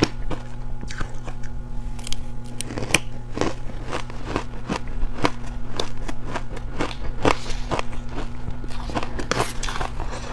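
Close-miked crunching and chewing of a mouthful of purple crushed ice, dense sharp crackles one after another, with a metal spoon scraping and scooping in a steel bowl. A steady low hum runs underneath.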